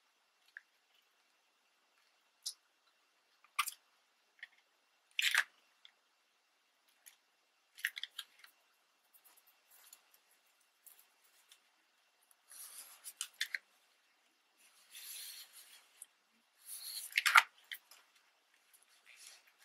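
Sheets of scrapbook paper handled on a cutting mat: scattered light taps and rustles, then a few short stretches of rubbing and rustling near the end as hands slide and press the paper flat.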